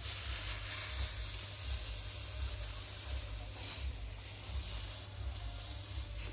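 Dry straw rustling and crackling as it is handled and heaped by hand over a clay pot, a steady papery noise that rises and falls with the hand movements.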